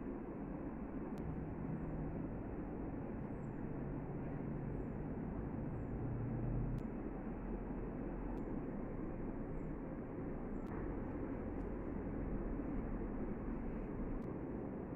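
Steady low background noise, a hum and hiss with no distinct event, broken only by a few faint light ticks.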